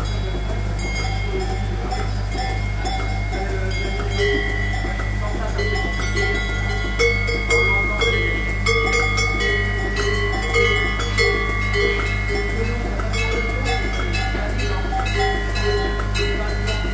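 A pipeline milking machine running in a cow barn: a steady low hum from the vacuum system, with a rhythmic pulsing about twice a second from the pulsators working the teat cups. Over it come irregular metallic clinks and bell-like ringing, louder from about four seconds in.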